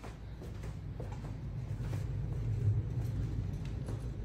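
Low steady rumble with a few faint clicks, growing a little louder about a second in.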